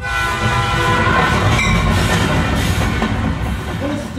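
Train horn sounding a long, steady chord over the loud rumble of a moving train.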